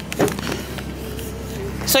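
A van's engine idling, a steady low hum, with a short click about a quarter second in.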